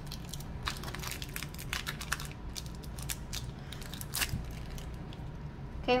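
Foil wrapper of a Pokémon trading-card booster pack crinkling and crackling in quick, irregular crackles as it is pulled open and the cards are drawn out, with one louder crackle about four seconds in.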